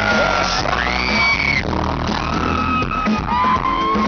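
Live pop band music played loud through a PA, with a male singer's amplified voice gliding and holding notes, and yells and whoops from the audience around the recording phone.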